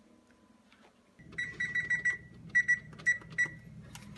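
Frigidaire electric range's control panel beeping: a run of rapid beeps, then four short single beeps, over a low steady hum that starts about a second in.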